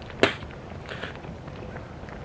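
A single sharp click about a quarter second in, with a fainter click near the middle, over a low steady outdoor hiss.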